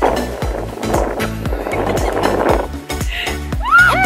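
Upbeat background music with a steady drum beat. A rough rushing noise runs under it for the first two and a half seconds, and a few short sliding tones come near the end.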